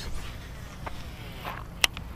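Faint rustling and handling noise, with one sharp click near the end.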